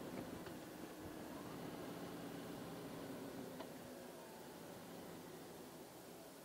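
Faint Harley-Davidson Street Glide V-twin engine running at low speed with road and wind noise, fading slightly toward the end.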